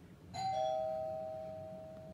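Two-note ding-dong doorbell chime: a higher note about a third of a second in, then a lower one, both ringing on and slowly fading.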